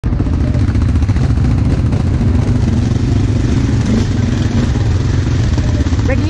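ATV (quad bike) engine running steadily as the machine rides along a rough trail, a loud low rumble heard close up from on board the quad.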